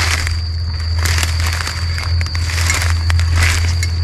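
Footsteps crunching and rustling through dry leaf litter on a forest floor, with irregular crackles as twigs and leaves break underfoot.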